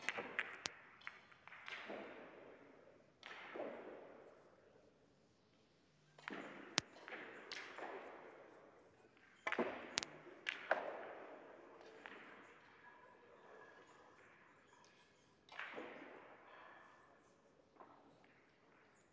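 Russian pyramid billiard balls clacking in several separate bursts: the sharp click of the cue tip and ball-on-ball collisions, each followed by a fading rattle of balls rolling and knocking.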